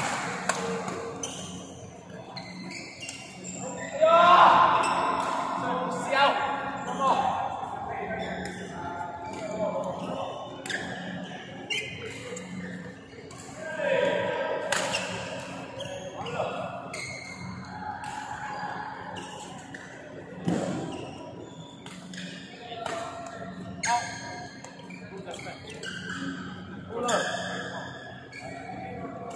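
Badminton being played in a large echoing hall: repeated sharp racket strikes on a shuttlecock, with voices and a steady low hum behind.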